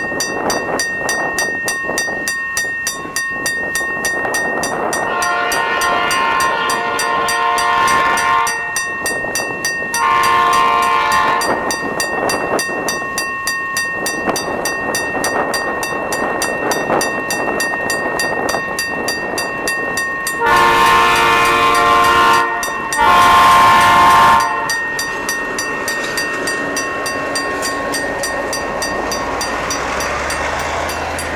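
Diesel freight locomotive's chord air horn sounding four blasts: a long one about five seconds in, a shorter one about ten seconds in, and two close together past twenty seconds. Between them the locomotive's engine runs and the freight wagons roll past, with a thin steady high squeal running through much of it.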